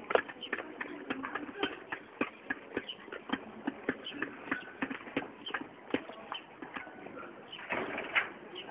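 A quick, irregular run of light taps and clicks, several a second, with a few short high chirps among them.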